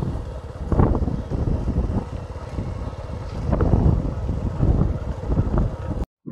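Wind buffeting the microphone in an open field, a loud low rumble that rises and falls in gusts.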